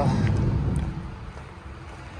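Low rumbling noise that dies down about a second in, with a couple of faint clicks.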